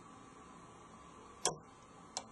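A single sharp metallic click from a Lishi HU101 2-in-1 pick working the wafers of a car lock, about one and a half seconds in, over a faint steady hiss.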